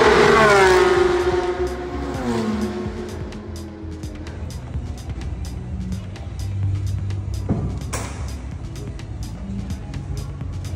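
A race car passes at speed down the main straight, loudest about a second in, its engine note dropping in pitch as it goes away over the next couple of seconds.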